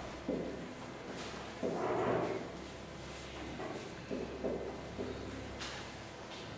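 Marker being written on a whiteboard in short, irregular strokes over a steady low room hum, with a louder noisy burst just before two seconds in.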